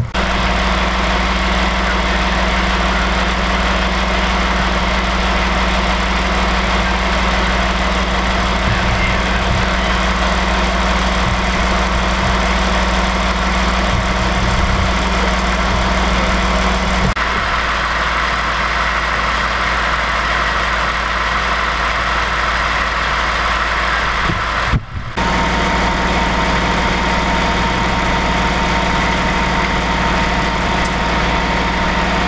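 Fire engine's diesel engine idling steadily, with a steady rush of flowing water over it. The sound drops out briefly once near the end.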